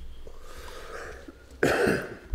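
A person coughing once, loudly, near the end, over a steady low room hum.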